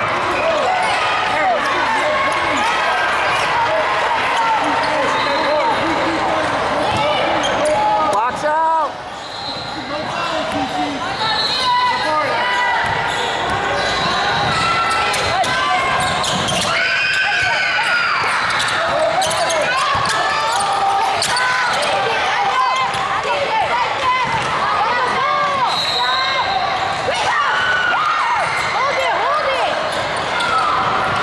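Basketball game sound in a large echoing gym: many voices talking and calling out over each other, with basketballs bouncing on the hardwood.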